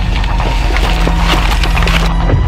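Dense crackling and snapping of twigs and brush, building and then cutting off abruptly, over a low steady drone.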